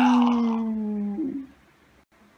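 A young man's long drawn-out cry, held at a steady pitch that sinks slightly, then cutting off about a second and a half in.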